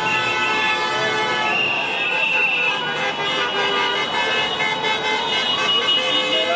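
Car horns from passing traffic honking, many overlapping and held, a sign of drivers honking in support of the protesters, over crowd voices.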